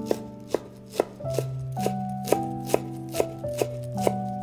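Chef's knife chopping parsley on a wooden cutting board, sharp even strokes at about two to three a second, over background music.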